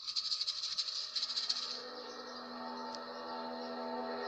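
A dry, fast-shaking rattle for about the first two seconds, then a held chord of steady tones that slowly swells as the song's introduction.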